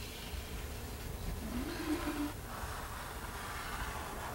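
Quiet studio room tone with a steady low hum. About halfway through there is a brief faint murmur, like a voice humming.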